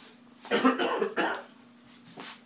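Coughing: two short, harsh bursts close together, the first longer than the second.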